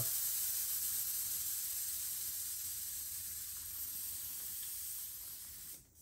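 Air hissing steadily out of a bicycle tire's inner tube through the valve, held open with a screwdriver tip. The hiss slowly fades as the tube goes flat and stops just before the end.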